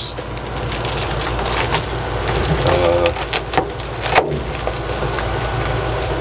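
Crinkling and crackling of a reflective bubble-foil insulation panel being handled and pressed into a ceiling vent opening, over a steady low hum.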